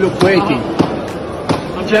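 Voices in a busy fish market, with two sharp knocks less than a second apart near the middle.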